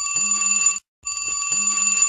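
Flip phone ringing with an old-style telephone-bell ringtone: a rapid metallic bell trill in rings about a second long, one short gap between them, the phone not yet answered.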